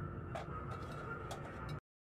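Low steady mess-hall room ambience with a faint hum and a few light clicks, cutting off abruptly to complete silence near the end.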